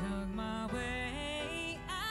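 A woman singing a ballad with long held notes that step upward in pitch, over backing music.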